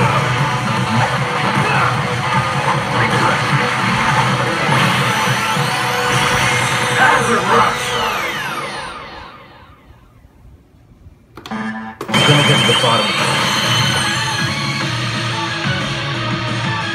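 Resident Evil 6 pachislot machine playing its loud bonus-mode music and sound effects with sweeping tones as it enters the Hazard Rush bonus. The music falls away about nine seconds in and cuts back in abruptly about three seconds later.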